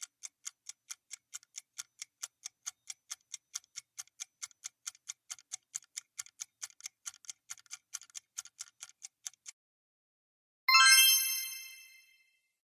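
Countdown-timer sound effect: quick clock ticking, about four ticks a second, that stops about 9.5 s in. About a second later a bright chime rings and fades, marking the end of the countdown and the reveal of the answer.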